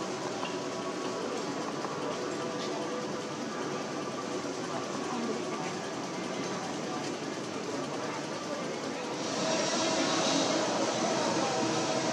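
Steady outdoor theme-park background din with indistinct distant voices. A brighter hissing noise rises about nine seconds in and holds to the end.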